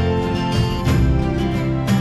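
Background music: steady sustained notes with a new chord or note change about once a second.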